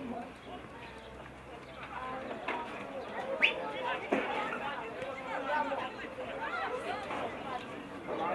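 Voices calling and talking across an outdoor football pitch during play, several people overlapping without clear words. A brief sharp sound stands out about three and a half seconds in.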